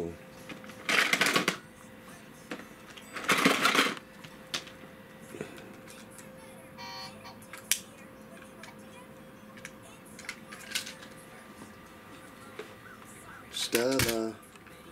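Plastic toys clattering as a toddler rummages in a plastic toy bin: two loud bursts of rattling about one and three and a half seconds in, then a few light clicks of plastic pieces. A short voice sounds near the end.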